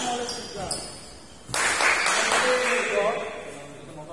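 Badminton rally on an indoor court mat: short high squeaks of shoes on the court in the first second, then a sharp hit about a second and a half in, followed by a man's voice calling out as the rally ends.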